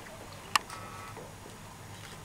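Quiet room tone with one sharp click about half a second in.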